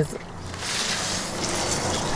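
A gust of wind blowing through the backyard, a rushing noise that swells steadily over the two seconds.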